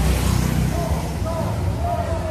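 Street ambience of a busy bar street: people's voices and a steady low rumble of motor traffic, with bar music in the background.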